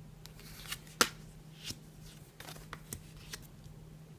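Tarot cards being dealt face-up onto a wooden table, a string of short card slaps and slides, the sharpest about a second in.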